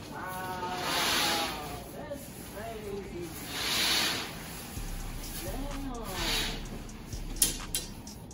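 Fabric curtain swishing as it is pulled open along its track, in several hissing pulls a couple of seconds apart, with a couple of sharp clicks near the end.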